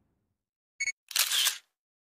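Sound effects of an animated channel logo end card: a very short high ping, then a half-second burst of hiss-like noise with a click-like attack.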